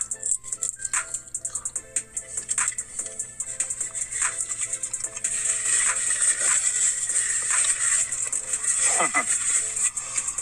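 Crunching and crackling from biting into and chewing a hard-shell crispy taco, with the paper wrapper crinkling, over soft background music. Short crisp snaps come in the first half, and a denser, louder crackle follows from about five to nine seconds in.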